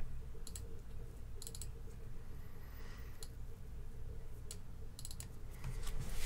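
Short, sharp computer mouse clicks, about five groups spread through, several as quick double clicks, over a low steady hum.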